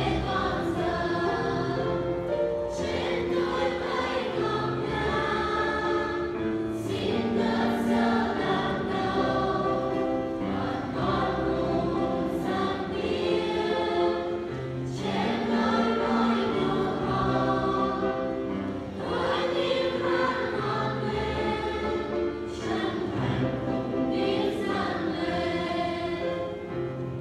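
A mixed choir singing a Vietnamese hymn in phrases a few seconds long, accompanied by piano.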